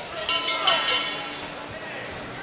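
Shouts from a boxing arena crowd and ringside, a burst of voices with one call falling in pitch in the first second, over the murmur of the hall.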